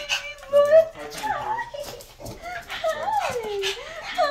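Pug whining excitedly while greeting a person, a run of high, wavering cries that rise and fall, several in a row.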